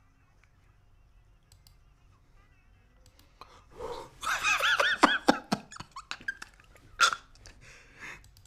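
Faint room sound, then a shrill, high-pitched anime character's voice shouting "No way!" over and over in quick succession, followed by a brief sharp burst of sound near the end.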